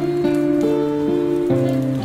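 Steel-string acoustic guitar with a capo at the fifth fret, hand-picked in a minor key with notes left to ring; a new bass note and chord come in about one and a half seconds in.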